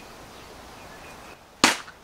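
One sharp crack with a short ring as a mesquite-wood shillelagh strikes a samurai kabuto helmet, about one and a half seconds in; the blow dents the helmet.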